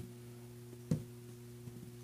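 A short pause in talk: a faint steady low hum of room tone, broken once, about a second in, by a single short click.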